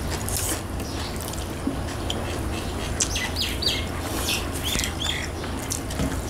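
Small bird chirping, several short calls in the second half, over wet clicks and smacks of chewing and eating with the hands, with a steady low hum underneath.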